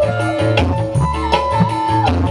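Live dangdut band music: an ornamented, wavering melody line over a steady bass and an even hand-drum beat, played on keyboard and tabla-style drums.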